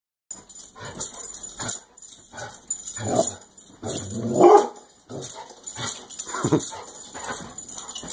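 A dog barking at a televised tennis match in a string of irregular short barks and yips, the loudest about three to four and a half seconds in.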